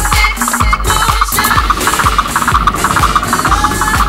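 Uptempo dance music with a steady kick drum about two beats a second and a busy, fast-repeating high riff coming in about a second and a half in.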